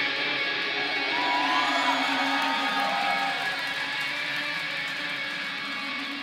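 Electric guitar left ringing through the amp after the full band stops: steady sustained tones slowly fading, with a few faint gliding tones in the first half.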